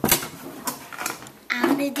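Handling noise on a table: a sharp knock at the start, then lighter clicks and clatter of wires, clips and plastic parts being moved about as a small launch-trigger box is pulled out from among them. A man's voice starts near the end.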